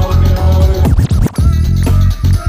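Loud DJ music with a heavy beat for a breaking battle, with turntable scratching about a second in as the beat briefly drops out.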